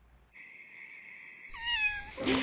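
A cartoon cat's short meow that bends in pitch near the end. It comes over a steady high tone and a shimmer of high falling notes that begin about halfway through.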